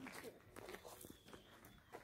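Faint footsteps crunching on gravel, a few light, irregular scuffs.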